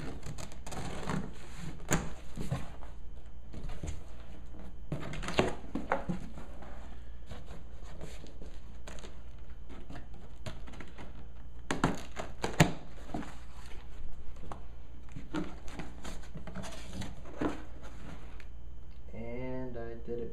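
Cardboard shipping box being opened by hand: packing tape slit with a box cutter and the flaps pulled open and folded back, giving irregular rustles, scrapes and dull thunks of cardboard.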